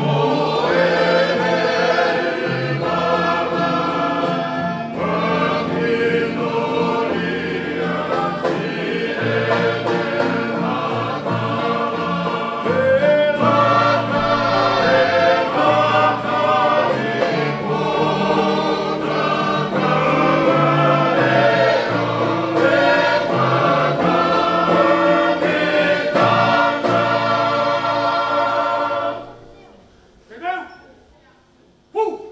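Tongan string band playing a tau'olunga song: a group of men singing in harmony, backed by strummed acoustic guitars, ukuleles and banjo. The music stops about a second before the end.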